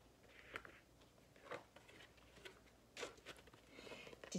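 Near silence broken by a few faint, soft rustles and taps, about three in all, as the pages of a paper picture book are handled and turned.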